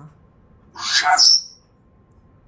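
An African grey parrot gives one short, loud call about a second in, lasting under a second and ending on a high note.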